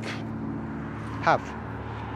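Honda GCV engine of a walk-behind rotary lawn mower running at a steady pitch.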